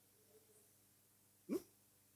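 Near silence, broken once about one and a half seconds in by a short cry that rises quickly in pitch, like a brief yelp.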